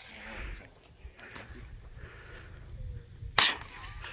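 A single sharp rifle shot about three and a half seconds in, from a scoped bolt-action rifle fired off a shooting bench, with a low rumble of wind before it.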